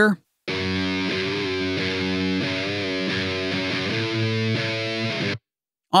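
Electric guitar take, amp-simulated through AmpliTube, playing back a slow, heavy riff of long sustained notes whose pitch shifts a few times. The playback cuts off suddenly shortly before the end.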